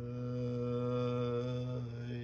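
A low male voice chanting one long held note that starts suddenly, its vowel shifting near the end.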